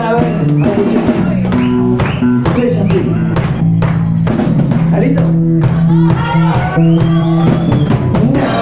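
Live band playing loud: electric guitars and bass over a drum kit, with steady drum hits throughout.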